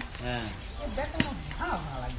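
Voices of the players calling out across the field in short shouts, over a steady low rumble of wind on the microphone.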